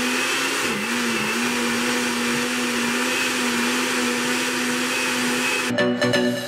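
Glass-jar countertop blender running steadily, puréeing a liquid sauce mixture. Its motor pitch dips briefly about a second in, then holds steady until it cuts off just before the end.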